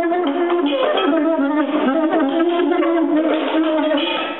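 Soprano saxophone improvising a quick, shifting melodic line.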